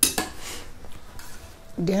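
A small bowl set down on the table among the dishes: a sharp knock and a lighter second knock just after, then quieter handling of the dishes.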